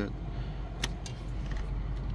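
A single sharp plastic click about a second in, from the shifter knob and its trim clips being handled, over a steady low hum from the running car.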